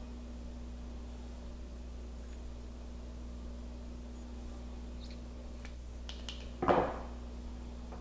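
Faint hand-tool work on thin stranded alarm wire: a few small clicks, then one short rasp about three-quarters of the way through as insulation is stripped from a conductor end, over a steady low hum.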